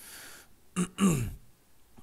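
A man clears his throat during a pause in his talk: a short voiced catch, then a falling one about a second in, after a soft breath.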